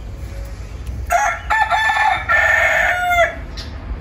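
A rooster crowing once, a single call of about two seconds that starts about a second in and ends on a held note.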